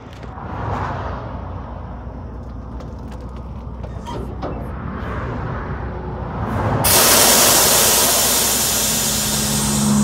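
Kenworth truck's diesel engine rumbling steadily at low speed while the rig is backed up slightly, with a few light clicks. About seven seconds in, a loud hiss of air venting from the air brakes starts and runs for about three seconds.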